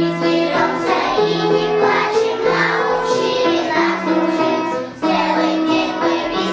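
A group of young children singing a song together, with a short break between lines about five seconds in.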